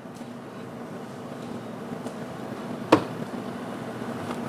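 Steady room tone with a low hum, picked up by the courtroom microphones, and one sharp knock or click about three seconds in.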